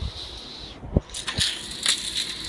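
Handling noise as toy figures and a handheld phone are moved about: a few soft knocks, the loudest about a second in, and crackling rustles.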